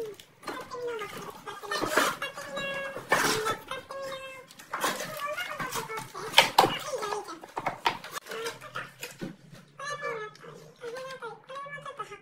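Women's voices chattering playfully, one repeating a sing-song line, while plastic packets of steam eye masks and a cardboard box rustle and tap as they are handled.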